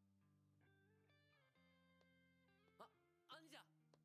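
Near silence: very faint background music of held, plucked-string notes that change pitch every second or so, with a brief faint voice calling out near the end.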